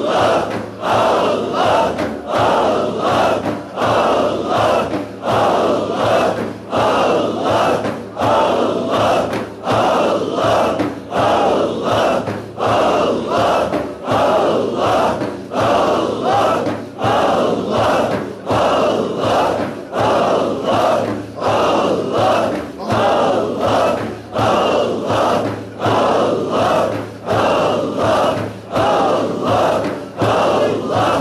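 A group of voices chanting dhikr in unison, repeating a short phrase in a steady rhythm about once a second.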